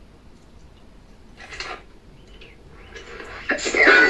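Swords clashing with a metallic ring and men's voices as a sword fight breaks out about three and a half seconds in, after a quiet start with one short clash or grunt about a second and a half in. It is a film soundtrack heard through a television's speaker in a room.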